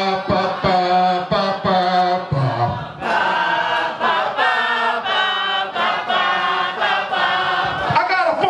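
A man chanting a rap refrain into a hand-held microphone; from about three seconds in, many voices chant along with him in unison, a crowd sing-along.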